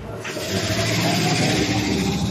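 A motor vehicle driving past, its engine noise swelling in about a quarter second in and holding steady.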